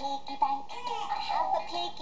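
Fisher-Price Laugh & Learn Piggy Bank toy playing a song: an electronic voice singing over music through its small, thin-sounding speaker, set off by pressing the pig's nose.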